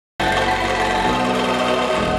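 An angklung ensemble playing: many shaken bamboo angklung sounding sustained, trembling chords together. The music cuts in suddenly just after the start, out of complete silence.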